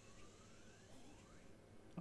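Near silence: room tone, with a couple of faint rising tones.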